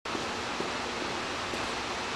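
Steady, even hiss of background room noise, cutting in suddenly at the start as the recording begins.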